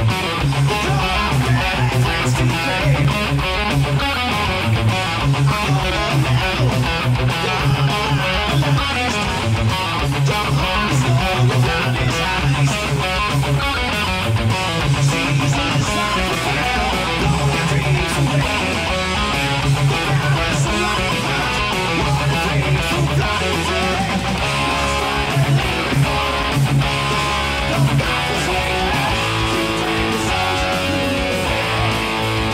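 Electric guitar playing a fast heavy-metal riff along with a band backing track. Steady drum hits and a pulsing low bass line run under it.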